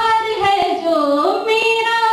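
A woman singing unaccompanied into a microphone, with long held notes that slide down in pitch and back up.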